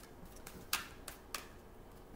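A deck of reading cards being handled: a few short, sharp card clicks, three of them close together in the middle.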